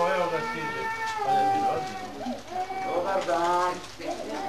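Young children's high-pitched voices calling out, with long, drawn-out notes that slide up and down.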